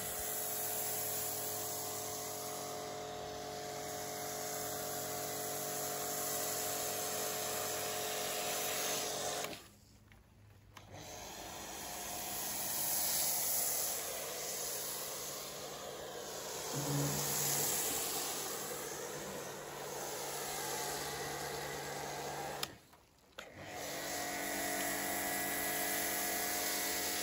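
Pressure washer running steadily with a foam lance spraying snow foam onto a car: a constant motor hum under the hiss of the spray. The sound cuts out briefly twice, about ten seconds in and again a few seconds before the end.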